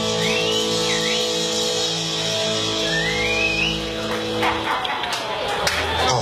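A rock band's final chord ringing out on electric guitars and bass, held for several seconds with a few high sliding guitar notes over it, ending the song. The chord stops about five seconds in, followed by a few short sharp sounds.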